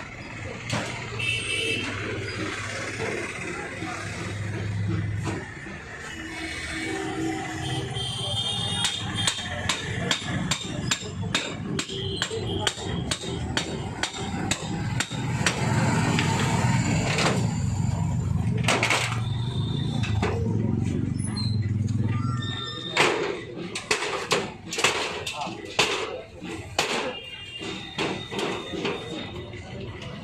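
Iron bar knocking and prying against a buckled rolling steel shop shutter, with repeated sharp metal clanks that come thickest in the second half, over voices and street noise.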